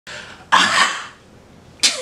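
A man's voice in short breathy bursts with little pitch: a soft one, a loud one about half a second in, and another loud one starting suddenly near the end.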